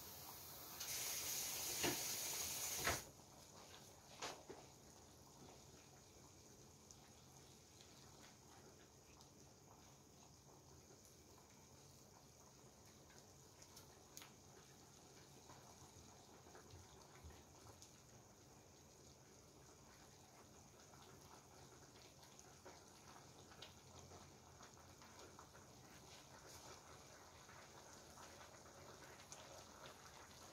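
Faint simmering of a broth of vegetables and meat in a pan on a portable butane burner over high heat, with a few soft clicks. A loud hiss runs for about two seconds near the start, then it is near silence.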